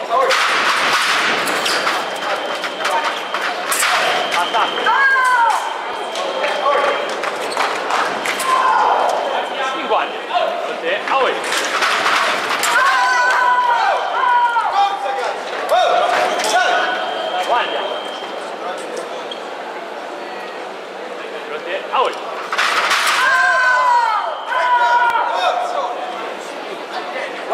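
Women's sabre bout: sharp impacts of stamping footwork and blade contact, the scoring machine's steady tone sounding as touches land, and loud shouts from the fencers in three bursts, near the start, midway and near the end.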